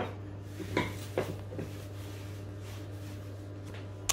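A few light knocks as an oven-gloved hand handles a metal baking tray of biscuits, over a steady low hum.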